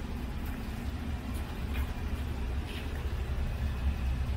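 Steady low rumble of background noise, with a few faint short taps.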